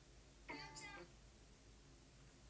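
A single short, wavering cry about half a second in, lasting about half a second, against near silence.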